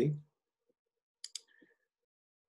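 Two sharp computer-mouse clicks in quick succession, a double-click about a second in.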